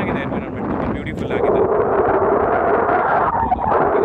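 Loud, uneven wind noise buffeting a phone microphone in the open air.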